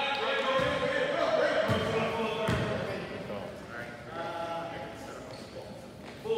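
Basketball bouncing on a hardwood gym floor: three thumps about a second apart in the first half, echoing in the large gym, with voices around it.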